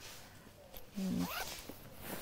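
A zipper on a padded jacket's lining being worked, with nylon jacket fabric rustling as it is handled. A short voice sound rising in pitch comes about a second in.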